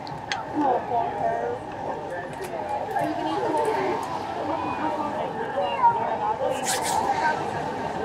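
Overlapping conversation of people talking at nearby tables of an outdoor sidewalk café, with a few light clicks and a short high hiss about two-thirds of the way through.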